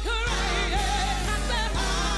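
Live gospel music: a woman sings the lead melody with wavering, gliding notes over a band, with sustained bass notes and a steady drum beat.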